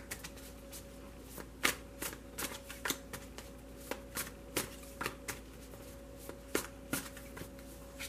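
A deck of tarot cards being shuffled by hand, the cards slapping against each other in irregular taps that come in short runs with pauses between.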